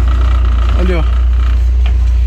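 Steady, loud low rumble of a moving pickup truck and its road and wind noise, heard from the open cargo bed.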